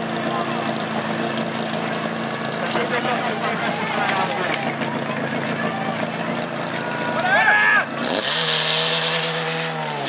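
Portable fire pump's engine running steadily, with voices shouting over it. About eight seconds in it is throttled up, its pitch rising to a louder, steady high-speed run once the suction hose is coupled.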